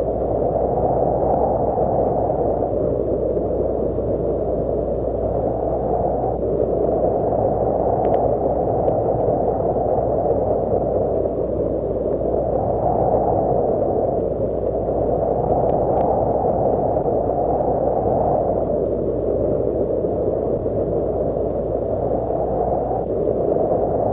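Muffled rushing noise, like a low wash of wind, swelling and easing every two to three seconds as the intro of a music track.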